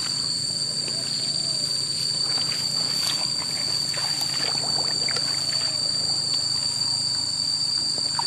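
Light rustling of grass and sloshing of shallow water as a wire noose-snare fence is handled, with scattered small noises, over a steady high-pitched ringing drone.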